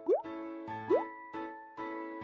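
Light background music with short rising 'bloop' pop sound effects laid over it, the kind an editor adds as pictures pop onto the screen. There are two pops, one right at the start and one about a second in, and they are the loudest sounds.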